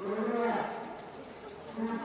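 Protester's voice shouting a slogan in a long, held tone at the start, with another held shout beginning near the end.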